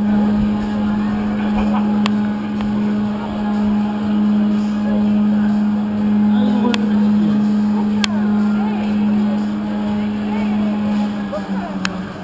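Drop tower's lift machinery hauling the ring gondola up the 61 m tower: a steady low hum that fades out just before the end as the gondola nears the top.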